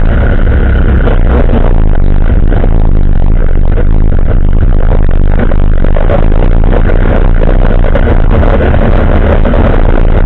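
ATV (quad bike) engine running while riding along a road, loud and steady throughout.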